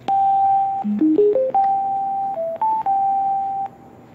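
Bluetooth speaker sounding its electronic status chime, a melody of plain beep tones. A held note is followed about a second in by a quick run of four rising steps, then further held notes that dip and rise before it cuts off near the end.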